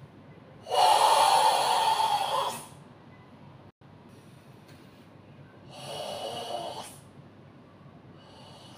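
Forced, audible breathing of Sanchin kata: a loud, throaty breath lasting about two seconds near the start, then a shorter, quieter one about six seconds in.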